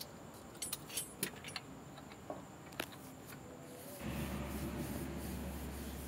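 Faint, scattered light metallic clicks and taps from hands and tools working on the engine's drive belts and pulleys, followed from about four seconds in by a low steady hum.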